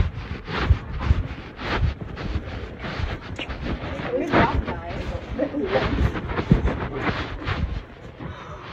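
Muffled rubbing and thumping on a covered phone microphone, repeating about twice a second, with faint muffled voices underneath.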